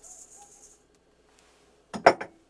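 Dry breadcrumbs poured from a glass into a steel mixing bowl of ground meat, a faint hiss that stops under a second in. A single sharp knock near the end.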